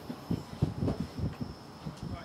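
Handling noise from a rifle scope being worked by hand: a string of soft, low, irregular knocks as the magnification ring is turned, under a faint steady high whine.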